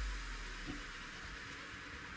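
A low bass note at the end of background electronic music fades out just after the start, leaving a faint steady hiss with a couple of tiny ticks.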